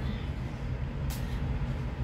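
Pedestal electric fan running steadily, a low hum under a whoosh of moving air, with a short hiss about a second in.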